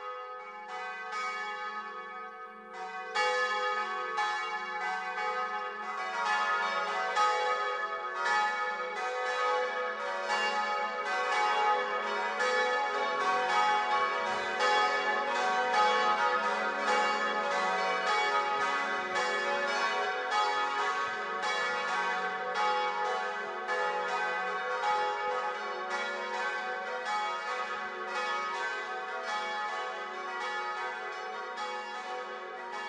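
Bells ringing in a peal: many strikes in quick succession, each left ringing, growing fuller and louder about three seconds in.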